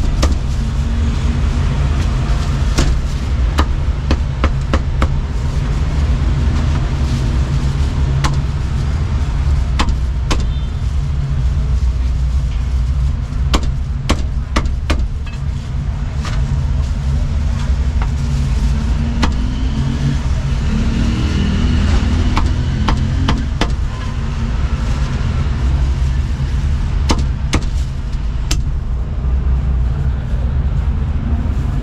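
A heavy cleaver chopping roast meat on a thick wooden chopping block, in sharp, irregular knocks. They sit over a steady low rumble.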